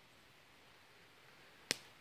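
Near silence, faint background hiss, with one short sharp click about three-quarters of the way through.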